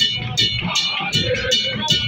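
Music with guitar over a steady, quick beat of nearly three crisp strokes a second.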